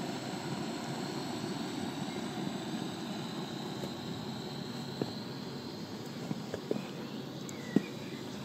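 Portable gas cartridge burner running steadily under a chimney of coal, preheating it to glow before it goes into a live-steam locomotive's firebox, with a few faint clicks in the second half.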